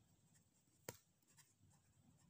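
Faint scratching of a pen writing on paper, with one sharp tick just under a second in.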